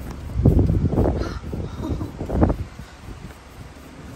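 Four harsh, rasping calls in quick succession over the first two and a half seconds, loud and rough rather than voiced like speech.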